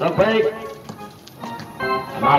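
A commentator's voice breaks off into a short lull with a few faint knocks from play on the outdoor basketball court. Near the end comes a brief steady held tone with several pitches together, like a horn or a note of music.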